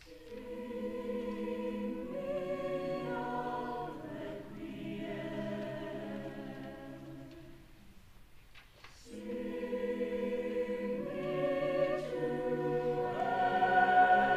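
Mixed-voice choir singing sustained chords in two phrases, with a short break about eight seconds in; the second phrase swells louder toward the end.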